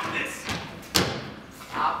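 Two thumps about half a second apart, the second sharper and louder, from a stage performance; a spoken word follows near the end.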